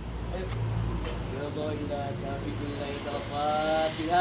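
A man's voice in long, drawn-out chanted syllables, typical of a group prayer being led aloud. A low rumble underlies the first second or so.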